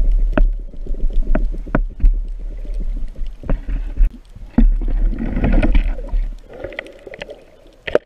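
Underwater sound picked up by a diver's camera at night: a steady low rumble of water moving past the housing, with scattered sharp clicks and knocks and a burst of bubbling about five seconds in.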